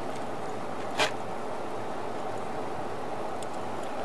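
Steady outdoor background noise with a single sharp click about a second in.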